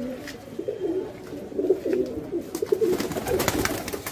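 Domestic pigeons cooing repeatedly in a loft, with a burst of sharp clattering near the end.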